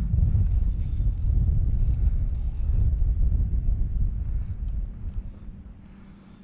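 Wind buffeting the camera's microphone: a loud, irregular low rumble that eases off over the last second or so.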